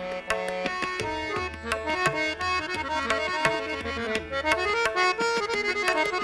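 Harmonium playing a stepping melodic phrase in Raag Marwa over quick, regular tabla strokes, with no singing, as the accompanists carry the music between the singer's lines.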